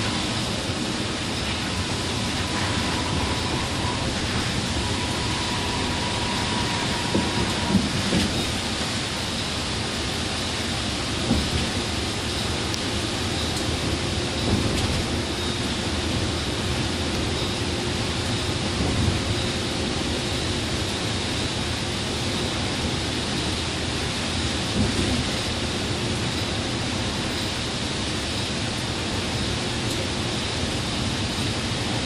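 Steady, even rush of noise heard inside an express coach cruising on a rain-soaked highway: tyres on the wet road, rain and the engine blending together, with a few brief low thumps.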